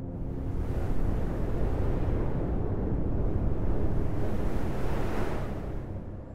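Cartoon sound effect of a deep, rushing wind. It builds over the first second, holds, and fades away near the end.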